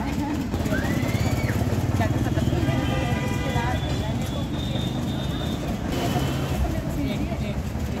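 Busy roadside street sound: people talking in the background over a steady low rumble of traffic.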